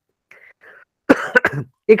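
A man coughing or clearing his throat briefly, a little over a second in, after a moment of faint breathing.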